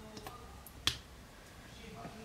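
A plastic lipstick tube being handled, with one sharp click about a second in and a few faint ticks before it.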